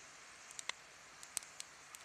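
Low, steady hiss of wind and water along the shore, with about half a dozen faint, sharp clicks scattered through it.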